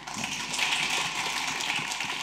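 Audience applauding, a dense patter of clapping that swells within the first half second.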